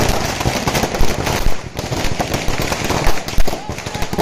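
A string of firecrackers going off in a rapid, uneven crackle of sharp bangs, with crowd voices mixed in.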